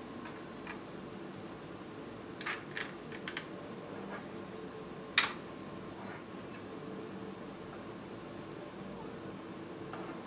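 Small plastic clicks as a 3D-printed enclosure and its snap-on cover are handled: a few light clicks between two and a half and three and a half seconds in, then one sharp click a little after five seconds, over a steady low hum.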